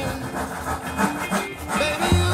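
A handsaw cutting through a wooden wall rail in repeated strokes, heard under background music.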